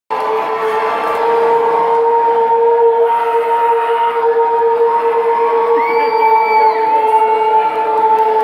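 Concert crowd cheering and shouting over a steady, sustained droning note from the stage sound system. A shrill whistle from the crowd cuts through about six seconds in, with another just after.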